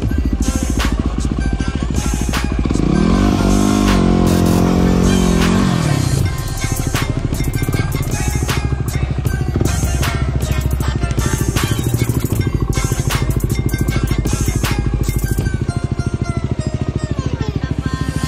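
Background music with a steady beat over a Yamaha WR250R's single-cylinder four-stroke engine, which revs up and back down a few seconds in.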